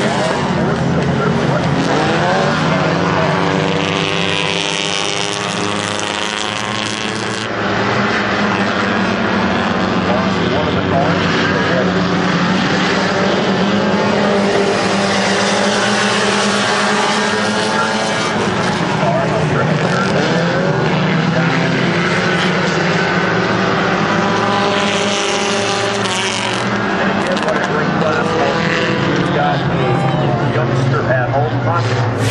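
A field of small four-cylinder Hornet-class dirt track cars racing together, several engines revving up and down at once as they go through the turns.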